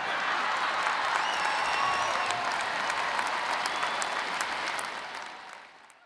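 Large audience applauding steadily, the applause fading out near the end.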